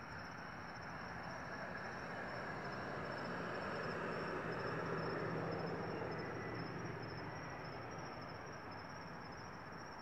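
Faint outdoor night ambience: a distant passing vehicle swells to its loudest about halfway through and fades, over a steady faint high insect trill.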